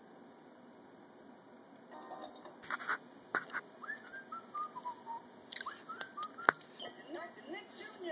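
Nick Jr. Face, the cartoon character, whistling a run of short notes that step down in pitch, with a few sharp clicks between. It is played back through computer speakers, and a voice comes in near the end.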